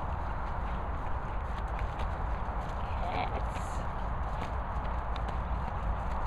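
A Staffordshire bull terrier's paws thudding and scuffing on grass as it spins in circles, heard as scattered soft knocks over a steady low rumble.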